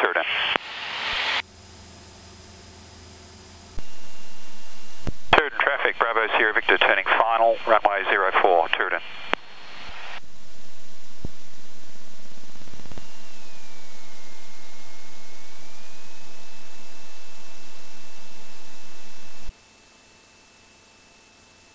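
Aircraft VHF radio heard through the headset intercom: a voice transmission lasting about four seconds that cannot be made out, then a steady radio hiss that cuts off abruptly near the end.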